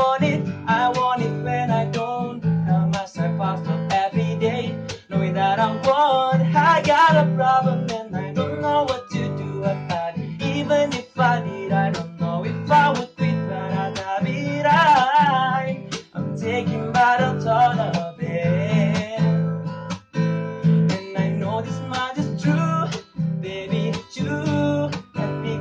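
Acoustic guitar strummed in a steady rhythm while a man sings along, his held notes wavering in a few long phrases.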